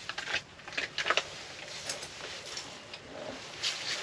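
Faint, scattered clicks and handling noise from a small ice-fishing spinning reel being wound in as a perch comes up the hole.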